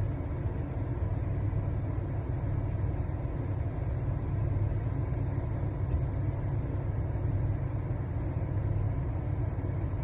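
Steady low rumble of a car heard from inside its cabin, with a faint click about six seconds in.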